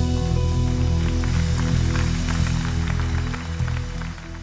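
Live worship band music: held chords over a deep sustained bass, easing down in level near the end.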